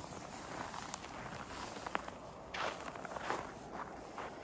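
Footsteps crunching on packed snow, with about three louder crunches in the second half.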